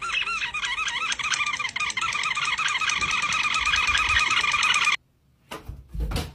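A dog's squeaky toy squeaking rapidly and rhythmically, about six high squeaks a second, as the dog works at it. It cuts off abruptly about five seconds in, and a few soft knocks follow.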